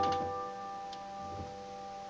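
A piano chord left ringing and slowly dying away in a pause between phrases, with a faint click about a second in.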